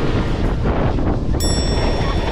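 Wind rushing over the microphone of a moving snowboarder, with the scrape of snowboard edges on hard-packed snow. A high ringing tone comes in about one and a half seconds in.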